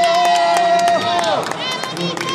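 A spectator's long, held cheering shout on one steady pitch, which drops away about a second and a half in, with sharp hand claps going on through it. Another voice starts near the end.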